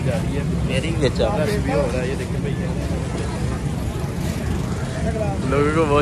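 Steady low rumble of road traffic, with several people talking close by in the first two seconds and again near the end.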